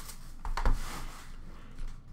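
Clear plastic shrink wrap being pulled off a cardboard trading-card box: crinkling rustles, loudest with a low bump about two-thirds of a second in, and a smaller rustle near the end.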